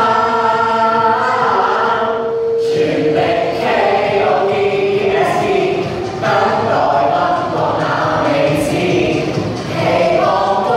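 Mixed choir of boys' and girls' voices singing, holding one long note for the first three and a half seconds before moving on to new phrases.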